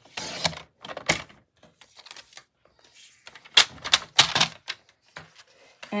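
Stampin' Up paper trimmer's blade carriage slid along its rail, cutting a strip of designer paper in a short rasp at the start, followed by a click and then a quick run of four sharp clicks and taps as the trimmer and paper are handled.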